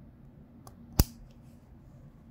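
A Huano-made light linear keyboard switch (Rose Cream V3) being snapped back together: one sharp plastic click about a second in as the top housing latches onto the bottom housing, with a faint tick just before it.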